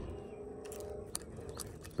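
Faint small clicks and scrapes of fishing tackle being handled while rigging a rod, over a quiet outdoor background.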